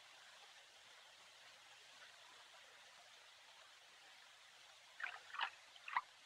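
Near silence: the faint steady hiss of an old film soundtrack. About five seconds in come two short faint sounds, and another just before the end.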